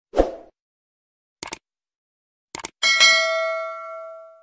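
Sound effects of an animated YouTube subscribe button: a short pop, two quick clicks about a second apart, then a bright notification-bell ding that rings on and fades away.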